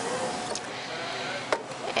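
Steady background hiss at a café counter, with two light clicks about half a second and a second and a half in.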